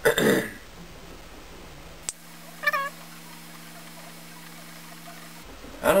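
A single short, high-pitched call, one quick rise and fall lasting about a third of a second, a little under three seconds in. It sounds over a steady low hum that begins with a click about two seconds in and stops just before speech resumes.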